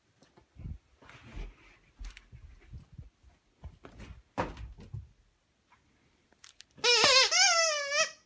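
Scattered thumps and footfalls on carpet, then near the end a plush squeaky toy squeezed: a loud squeal about a second long with a wavering, gliding pitch.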